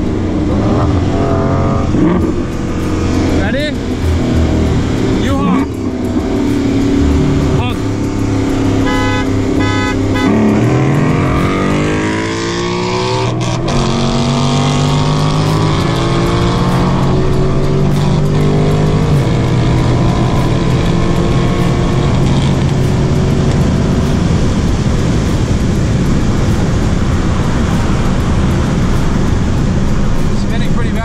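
A Dodge Challenger SRT 392's 6.4-litre HEMI V8, heard from inside the cabin during a roll race. About ten seconds in the revs dip and then climb hard as the car accelerates. After that the engine runs high and fairly steady under load.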